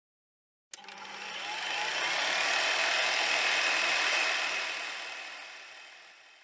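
Intro sound effect for an animated logo: a noisy whoosh that starts abruptly about a second in, swells to a peak in the middle and fades away near the end.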